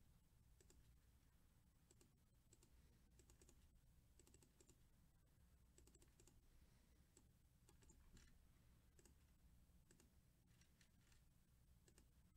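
Near silence with faint, irregular computer keyboard and mouse clicks, some in quick little runs.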